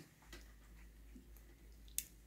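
Near silence with faint handling of the bamboo kite spars and string: a few soft ticks, then one sharp click right at the end.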